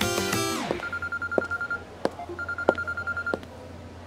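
Guitar music ends with a quick falling sweep, then a telephone rings with an electronic trilling ring: two bursts of about a second each with a short pause between, with a few sharp clicks along the way.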